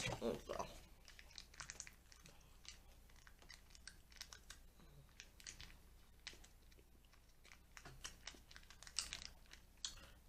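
Faint, scattered clicks and crinkles of a small plastic dipping-sauce cup being picked at with fingernails, trying to peel off its sealed lid. A short louder burst comes right at the start.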